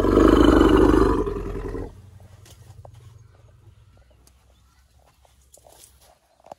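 An elephant roaring: one loud call lasting about two seconds, trailing into a fainter low rumble that fades over the next couple of seconds.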